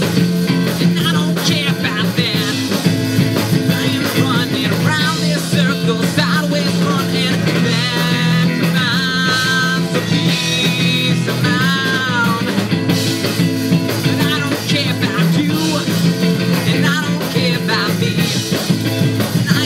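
Live rock band playing: electric guitars and a drum kit through small amplifiers and a PA, a dense, loud, steady mix. Around the middle a high melody line bends up and down in pitch over the band.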